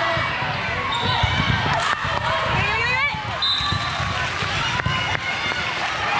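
Indoor volleyball play in a large gym: many overlapping voices of players and spectators, with scattered thuds of the ball and players' feet on the court.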